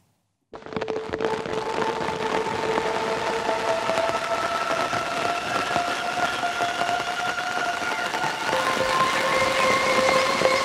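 A granular pad built from field recordings, run through two Soundtoys Crystallizer granular echoes, one shifting each repeat up 50 cents: a dense crackling texture with several held, chorus-like tones stacked at different pitches, really eerie. It comes in about half a second in, and the held tones shift to new pitches partway through and again near the end.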